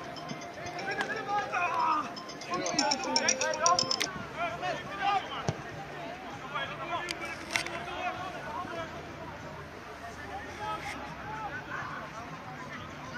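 Players calling and shouting across an outdoor soccer pitch, with scattered voices and a few sharp knocks of the ball being kicked.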